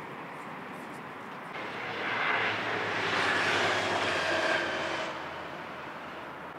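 A vehicle passing by: a rushing sound that swells from about a second and a half in and fades out about five seconds in, with a faint whine that drops a little in pitch as it goes. It sits over a steady background hum.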